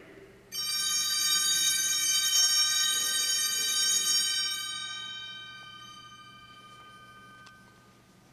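Altar bell rung at the elevation of the consecrated host: a bright, many-toned ringing starts suddenly about half a second in, holds steady for about three and a half seconds, then fades away over the next few seconds.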